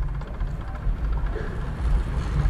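A low, uneven rumble of wind rushing over a bike-mounted camera's microphone, mixed with rolling noise from a track bicycle riding the wooden velodrome boards.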